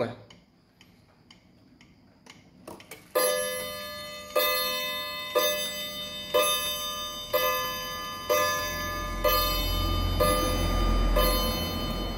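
Antique Japanese 30-day spring-wound pendulum wall clock striking nine o'clock on its two red-copper gongs: nine ringing strikes, about one a second, starting about three seconds in, their tones overlapping. Before the strike the movement ticks quietly.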